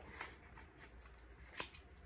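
A quiet pause with faint small clicks and light handling noise, and one sharper click near the end.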